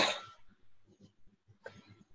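A single short cough at the very start, dying away within about half a second, followed by a quiet stretch with faint room noise.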